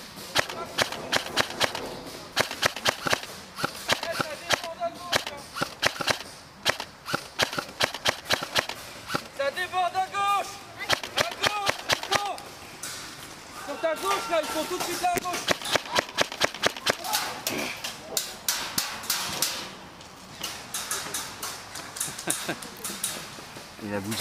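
Airsoft guns firing: many sharp shots, often in quick strings, with voices calling between them.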